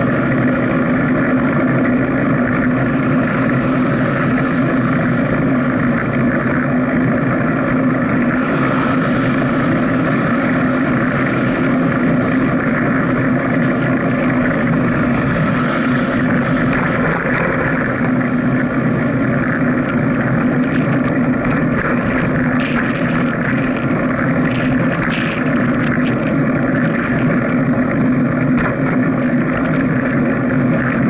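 A small motor drones at a steady pitch, with the hiss of passing cars swelling about 9 and 16 seconds in, and light rattling clicks in the last third.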